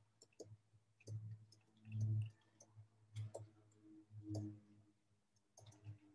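Faint, irregular clicks and taps of a stylus on a tablet while someone writes by hand, with a few soft low bumps about a second apart.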